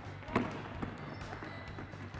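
Netball thudding as it is passed and caught, with players' feet on a wooden sports-hall floor: one sharper knock about a third of a second in, then a few lighter ones.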